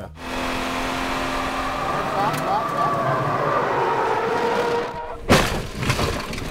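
Car driving hard on a loose dirt surface: engine running with the rush of tyres and gravel, and a sudden loud burst of noise about five seconds in.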